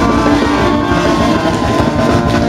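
Live band with a horn section, trombone among the horns, holding a long sustained chord over drums and bass.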